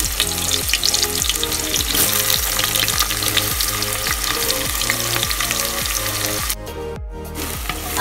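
Sliced onions sizzling and crackling in hot oil in an aluminium pressure cooker. The sizzle breaks off briefly near the end.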